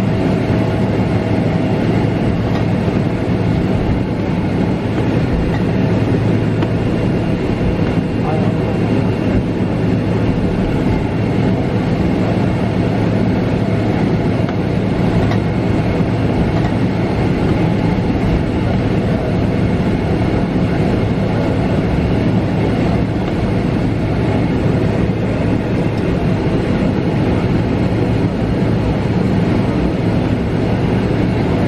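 Steady cabin noise of a Boeing 777 taxiing: its jet engines running at idle with a low hum and a continuous rumble from the wheels rolling along the taxiway.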